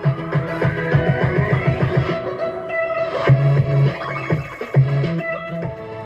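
Guitar-led music with a strong, rhythmic bass line, played through a repaired AB2000 car audio amplifier module fitted with a larger substitute input transformer. The sound is clean, with no distortion or hiss.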